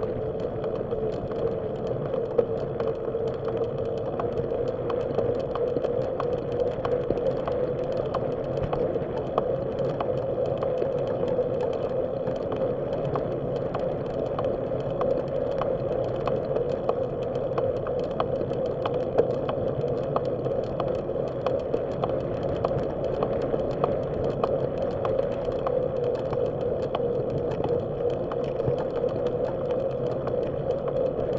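Bicycle rolling steadily along a paved path, picked up by a camera riding on the bike: a continuous hum of tyres and drivetrain with frequent light ticks and rattles.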